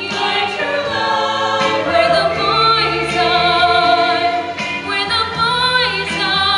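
Show choir singing a song in parts, several voices with vibrato held on sustained notes.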